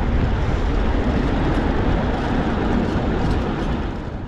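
Wind buffeting a handlebar-mounted action camera's microphone while cycling through city traffic: a loud, steady rushing noise, heaviest in the low end.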